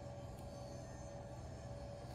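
Quiet room tone with a faint steady hum that fades out about one and a half seconds in; no distinct sound from the hand-turned Z-axis nut.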